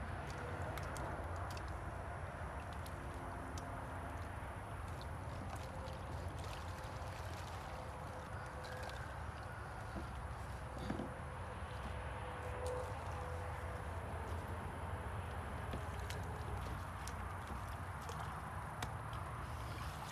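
Quiet outdoor pond-side background: a steady low rumble with a few faint, scattered clicks.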